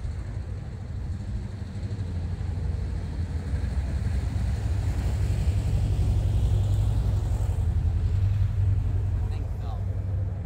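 Low rumble of a passing road vehicle, swelling to its loudest a little after midway and then easing off.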